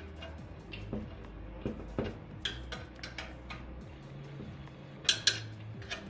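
Irregular metallic clicks and clinks of a small hand tool on the steel mounting nuts and studs of a Harman pellet stove burn pot as the nuts are snugged down, with two sharper clinks about five seconds in.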